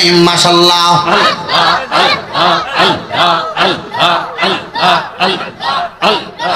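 A man's voice holds a long sung note, then about a second in gives way to rhythmic zikr chanting: 'Allah' repeated as short, forceful, breathy syllables about twice a second, at a steady pace.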